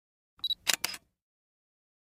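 Short intro sound effect: a brief high ping followed by two quick sharp clicks, like a camera shutter, all within the first second.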